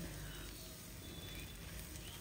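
Faint, steady hiss of snake gourd and egg bhaji frying quietly in oil in a nonstick pan, with no water added.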